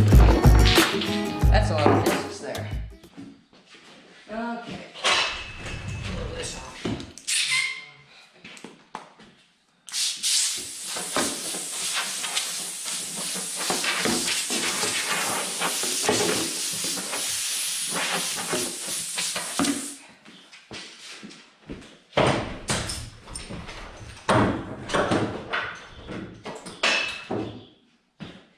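Wooden hole-saw plugs knocking and clattering as they are swept off a plywood top, then about ten seconds of steady hissing as the sawdust is cleared from it. Guitar music fades out in the first few seconds.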